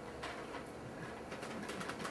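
Faint, scattered clicks of prayer beads being fingered in the hands, over quiet room tone.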